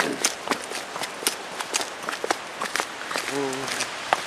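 Footsteps on a gravel path, walking at a steady pace, over an even background rush. A brief voice sounds near the end.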